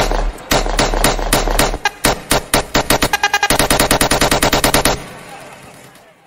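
Dancehall sound-system music with heavy bass, broken off about two seconds in by a rapid, speeding-up run of machine-gun-style hits, the gunfire sound effect that dancehall sound systems fire. The run fades away in the last second.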